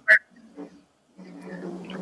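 Brief scraps of a person's voice in a pause in the talk, then a low, drawn-out voice sound in the last second that runs straight into speech.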